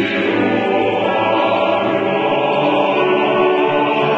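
A church choir singing a sacred choral anthem in long, held chords.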